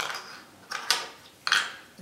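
A few short plastic clicks and handling rattles from fitting the snap-on covers onto a Sonoff Wi-Fi switch module.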